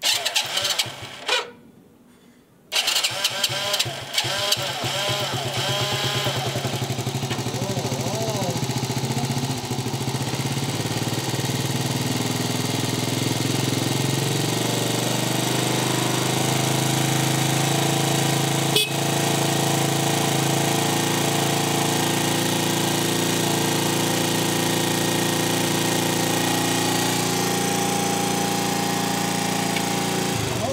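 Motor scooter engine starts about three seconds in and idles steadily, then shuts off at the very end. A single sharp click is heard about two-thirds of the way through.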